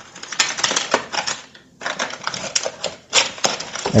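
A foil ration-bar packet being torn open and crinkled by hand: a run of sharp, irregular crackles, with a brief pause near the middle.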